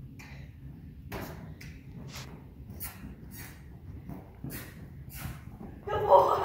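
Hooves of a led horse and a person's footsteps scuffing through the sand footing of an indoor arena, about two short scuffs a second starting about a second in, over a steady low rumble.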